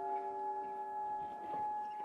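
A quiet passage of modern orchestral music: a soft chord of several held tones. The lowest held note drops out a little past halfway.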